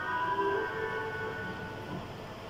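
A horn sounding one steady blast of several tones at once, fading out near the end.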